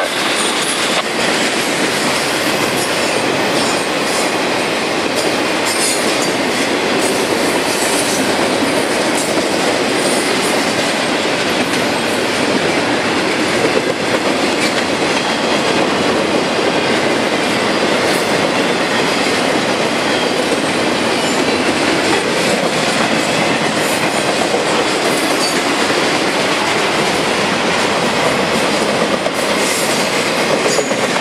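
Double-stack intermodal freight train rolling past close by: the steady, continuous noise of its cars' wheels running over the rails.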